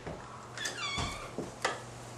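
A glass-paned exterior door being opened: the knob and latch click several times, and the hinge gives a high squeak that slides downward for about half a second, starting about half a second in.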